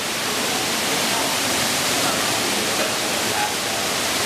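Man-made indoor waterfall, a sheet of water pouring into a shallow pool: a steady, very loud rush of falling water.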